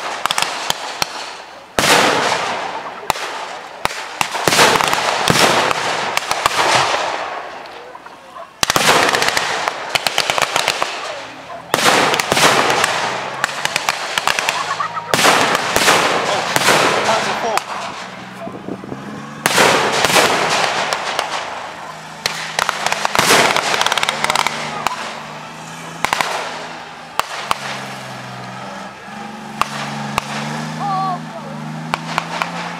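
Battle re-enactment pyrotechnics: a series of loud bangs with dense crackling, like blank gunfire, each dying away over a few seconds. From about halfway, a low engine drone from armoured vehicles runs underneath, its pitch shifting, and it is stronger near the end.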